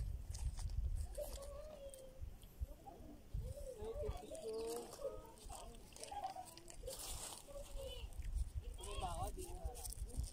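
Indistinct voices of people talking some way off, with gusts of wind rumbling on the microphone and brief crinkling of a snack wrapper near the end.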